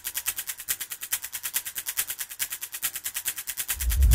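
A rapid, even train of sharp, high-pitched clicks, about a dozen a second, like a ticking trailer sound effect, with a deep rumble swelling in near the end.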